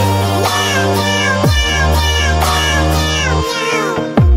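Electronic dance music with a heavy, deep bass line and a melody of short falling cat-meow sounds; the bass drops out briefly near the end.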